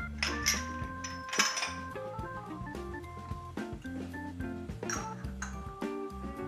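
Background instrumental music with held keyboard notes that change in steps. A few short clinks and clatters of kitchen utensils and pans come about half a second in, around a second and a half in, and near the end.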